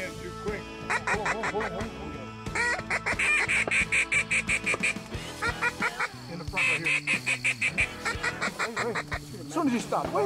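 A duck call blown in runs of quick, rapidly repeated quacking notes, one series after another.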